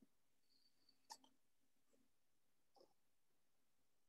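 Near silence: room tone, with a few faint, brief clicks, the clearest about a second in.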